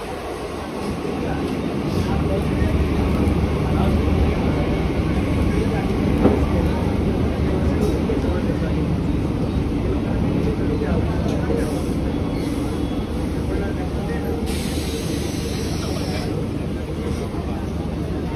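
Western Railway Mumbai local electric multiple-unit train running past along the platform, a steady rumble of wheels and motors as it slows toward a stop. A burst of hiss comes about three-quarters of the way through.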